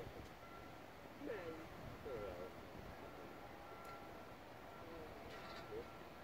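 Faint outdoor ambience at a lookout: snatches of other people's voices in the distance, a low wind rumble on the microphone, and a faint short high beep repeating every second or so.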